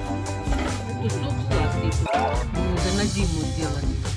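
Background music, with voices mixed in.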